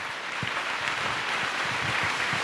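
A congregation applauding, a steady wash of clapping that builds slightly and keeps on.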